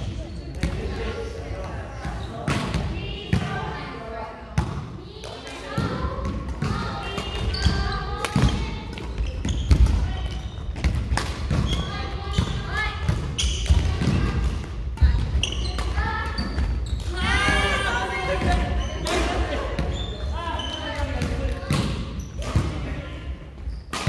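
Badminton doubles rally: repeated sharp racket hits on the shuttlecock and players' footsteps on a wooden court floor, with voices in the hall.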